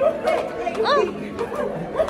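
Several people talking and calling out over one another, one voice rising sharply about a second in, with music playing faintly underneath.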